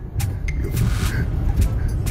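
A moving car's engine and road rumble heard from inside its cabin, with a few brief knocks.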